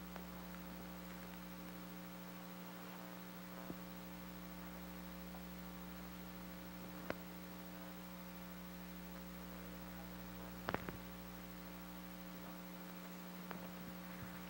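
Steady electrical mains hum, with a few faint clicks and knocks; the loudest is a quick cluster of knocks about three-quarters of the way through.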